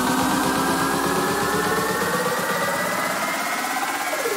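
Electronic dance music build-up: a buzzy synth riser climbing slowly and steadily in pitch, while the bass and beat drop away about halfway through.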